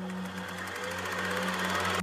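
A fast, even buzzing rattle like static that swells slightly, heard over a steady low drone of background music.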